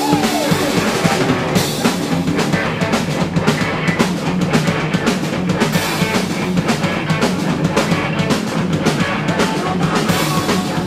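Live rock band playing loud and fast: drum kit pounding with electric guitars and bass. A high tone glides down right at the start.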